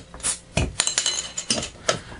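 Capped glass beer bottles being opened with a metal bottle opener: a string of sharp clicks and clinks of metal on glass as the caps are pried off.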